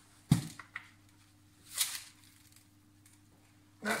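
Wet aquarium gravel tipped from a net into a bowl: a sharp knock about a third of a second in, a few small clicks after it, and a short rustling hiss near the middle.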